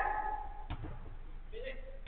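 A football kicked once, a single dull thud about two-thirds of a second in, with players' shouts in a large hall trailing off at the start and a faint call near the end.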